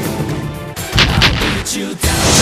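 Gunshot sound effects: the music drops away, then a few loud shots ring out in quick succession about a second in, over music.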